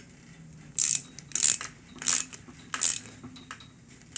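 Ratcheting torque wrench tightening a stem faceplate bolt toward 5 Nm: four short bursts of ratchet clicks, roughly two-thirds of a second apart, as the handle is swung back and forth.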